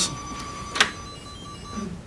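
A single sharp click about a second in, from a key pressed on the smart toolbox's add-on keypad, over a faint steady high electronic tone that stops near the end.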